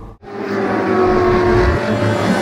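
Car engine sound, starting abruptly after a short gap and then holding steady and loud.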